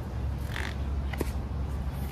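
A picture book's paper page being turned: a short rustle about half a second in and a small click a little later, over a steady low background rumble.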